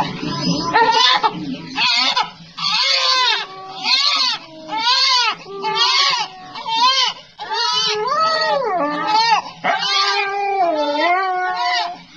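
Newborn baby crying: a run of short wails that rise and fall in pitch, roughly one a second, with brief breaks between them.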